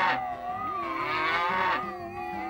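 A cartoon cow's long, drawn-out moo, wavering slightly in pitch, with a second moo beginning near the end.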